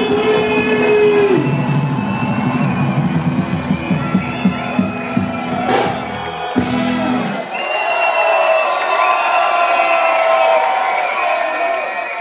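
A live band with electric guitars and brass, drums and bass plays the closing bars of a song and stops about seven seconds in. A large crowd is cheering loudly through the end of the song and after it.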